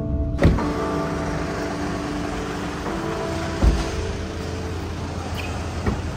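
Car cabin noise in a moving taxi: a steady road and engine hum, with one low thud about three and a half seconds in, under faint background music.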